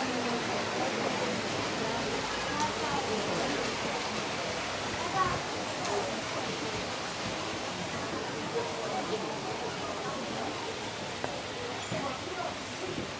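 Steady rush and splash of water pouring from outflow pipes into a trout pond, with indistinct voices of people in the background.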